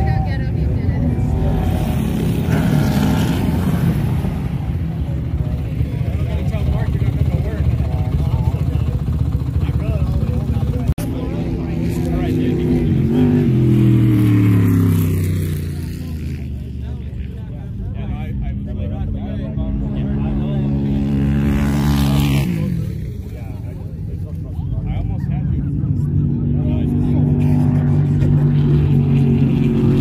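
Dune buggy and sand rail engines running hard across open sand, their drone rising and falling in pitch as the vehicles pass; one note falls away about 13 seconds in, and the sound changes abruptly about 22 seconds in.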